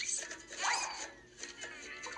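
Quick sound effects: a short rising whistle-like glide, then a louder swishing sweep about half a second in, over faint background music.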